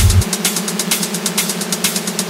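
Techno track in which the kick drum and bass cut out about a quarter second in. What is left is a gritty, buzzing synth loop pulsing in the mids, with rapid hi-hat ticks above it: a breakdown in the track.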